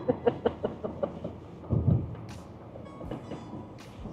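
A woman laughing in a quick run of short 'ha' pulses that tails off within the first second, then a brief low sound about two seconds in, over the steady low rumble of a car cabin.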